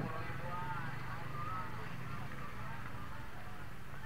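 A vehicle engine running steadily at low revs, with the faint chatter of a crowd of people.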